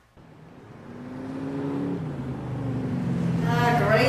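Supercharged V8 engine of a black Dodge Charger muscle car growing steadily louder as it accelerates toward the listener. Its note drops about halfway through, like a gear change, and then keeps building.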